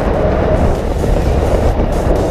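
Wind rushing over the microphone during a tandem parachute descent under an open canopy: a loud, steady rumble with no breaks.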